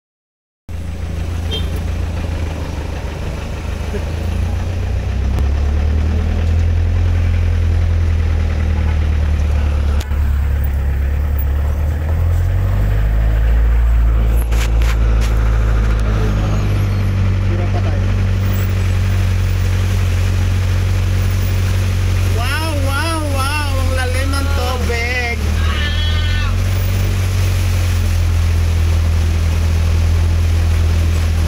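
Steady low drone of a vehicle's engine and road noise, heard from inside the cabin while driving on a wet road. Past the middle, a person's voice with a wavering, sing-song pitch rises over it for about four seconds.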